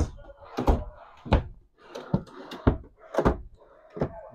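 Kitchen cabinet drawers being pulled open and pushed shut, giving a series of about six sharp knocks spaced under a second apart.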